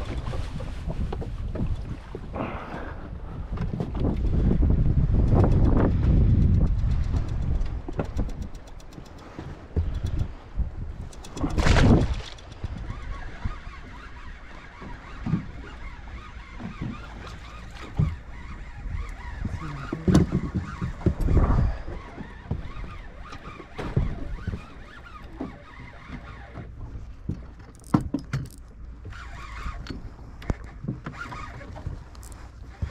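Wind buffeting the microphone and choppy water lapping against the side of a boat, heaviest in the first few seconds. Scattered knocks and handling noises come through, with one loud gust or splash about twelve seconds in.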